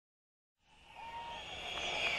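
Silence, then from about half a second in, an electronic music intro: a synth swell building steadily in loudness, with tones that glide up and down, leading into the song.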